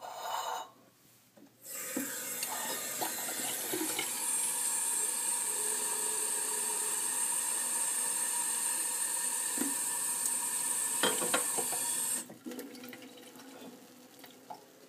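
Water running from a kitchen faucet into a ceramic mug, a steady stream for about ten seconds that stops sharply near the end.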